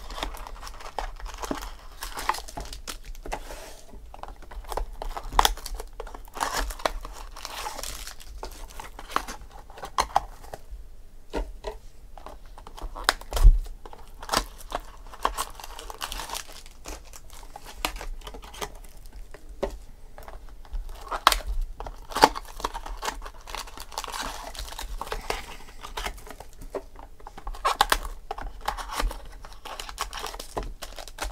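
Clear plastic wrapper on a trading-card pack crinkling and tearing as it is peeled open by hand, with rustling and small clicks throughout. A single thump about halfway is the loudest sound.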